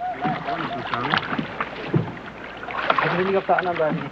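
Indistinct men's voices aboard a small wooden rowboat on a lake, with the boat's water sounds and a few knocks.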